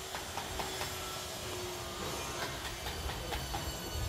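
Low, steady rumble of outdoor street ambience, with a faint steady hum through the first half and a few faint clicks.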